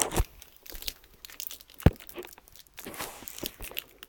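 Rustling and crinkling of cloth rubbing against the handheld camera's microphone, with scattered clicks and one sharp knock a little under two seconds in.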